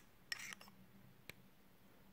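Faint sounds of a Lamy Studio fountain pen's cap being worked onto its barrel: a brief scrape about a third of a second in, then a single small click a little past a second in. The cap is snapping into its catch, which holds it firmly.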